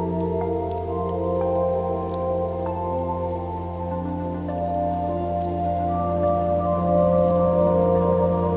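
Slow ambient music: held, overlapping notes over a steady low drone, with a new note entering every second or two. Faint crackling of twigs is layered underneath.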